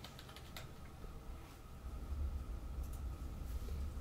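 Faint clicks and light rustles of a baseball card being handled, over a low steady hum.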